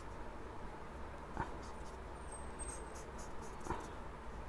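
Faint sound of a highlighter marker on paper, with two light taps about a second and a half in and near the end, over a steady low hiss.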